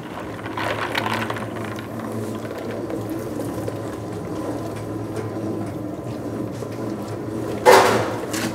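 G.Paniz spiral dough mixer running steadily at low speed while ice-chilled water is poured from a plastic bucket into its bowl of dough. A short sharp noise near the end.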